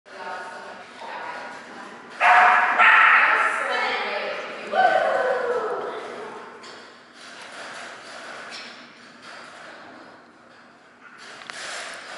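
A dog barking and yelping. Three loud, drawn-out barks come between about two and six seconds in and echo around a large hall.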